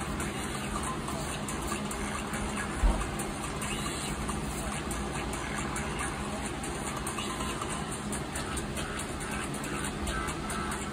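Steady rushing noise, with one low thump about three seconds in.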